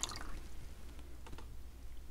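Last drips of water falling from a graduated cylinder into a calorimeter cup, fading out just after the start, then a few faint ticks.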